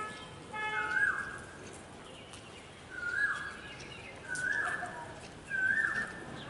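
A bird call repeated about five times, one to two seconds apart, each a short squeal that rises slightly and then drops. Two short beeps of a horn sound in the first second.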